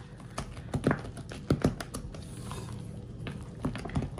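Pink silicone spatula folding a thick whipped-cream and cream-cheese filling in a glass bowl: irregular soft squelches and light clicks, thickest in the first two seconds, with a few more near the end.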